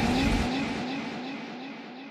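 The last sound of a chopped-and-screwed mix fading out. The bass drops away about half a second in, and a short sound repeats about four times a second as an echo, getting steadily quieter.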